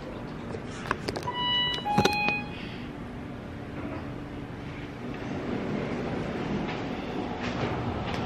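A couple of clicks, then a short two-note electronic beep, the second note lower. A steady low mechanical hum follows, growing a little louder after about five seconds.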